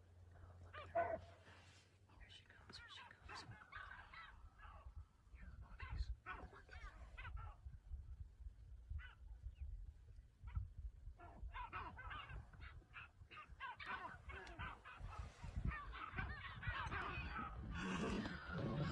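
Faint, irregular honking calls, busiest in the second half, mixed with people's low voices over a low rumble.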